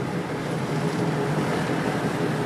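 Steady rush of wind and road noise at an open car window, with a freight train rolling alongside.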